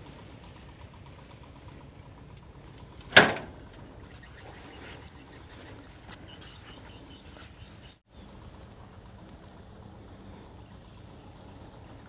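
Quiet outdoor background with a faint steady high whine, broken by one sharp knock about three seconds in.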